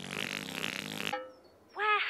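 Buzzy, rasping cartoon sound effect as the Teletubbies voice trumpet rises out of the ground, cutting off suddenly about a second in. A narrator's voice begins near the end.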